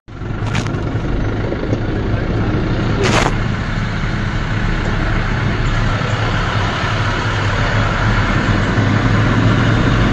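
Steady low rumble of truck and car engines in stopped highway traffic, with two short hisses about half a second and three seconds in.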